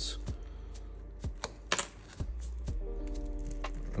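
Small clicks and crackles, about two a second, as a razor blade and plastic pick pry shattered glass and its adhesive away from the iPad's frame. Soft background music holds a steady chord from about three seconds in.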